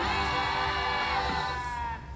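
One long, drawn-out voice, a single held call sliding slowly down in pitch, over a steady music bed, most likely from the cartoon playing on the TV.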